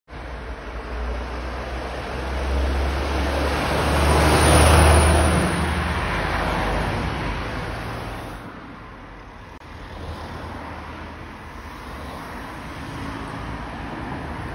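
A road vehicle passing by, growing louder to a peak about five seconds in and fading away by about eight seconds, followed by quieter background traffic noise.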